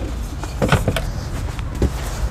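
A few short wooden knocks and clatter as a small fold-up wooden side table in a camper van is handled and folded, a cluster of them about three-quarters of a second in and another near the end, over a steady low hum.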